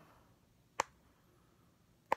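A single short click about a second in, the switch of a portable video light being pressed to turn it on; otherwise very quiet.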